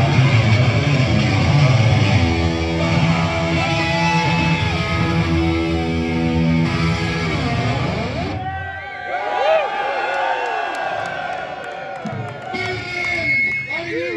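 Live heavy metal band playing loud, led by electric guitar with long held notes. About eight seconds in the band sound drops away, leaving people shouting and talking close to the microphone.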